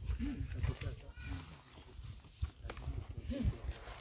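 Indistinct low voices, with two short calls that rise and fall in pitch, one just after the start and one about three and a half seconds in.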